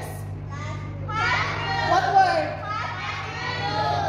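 Several children's voices calling out at once, answering a picture-card word game, over a steady low hum.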